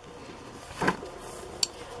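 A page of a wire-bound handmade smash book being turned by hand: low paper handling with a brief rustle a little before halfway and a single sharp click about three-quarters of the way through.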